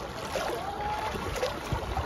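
Water splashing and sloshing from a swimmer's arm strokes in a pool, heard from just above the water's surface, with irregular small splashes.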